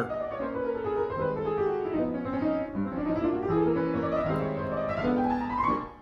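Piano: a fast chromatic run in the right hand that descends for about three seconds and then climbs back up, over held left-hand chords. It stops shortly before the end.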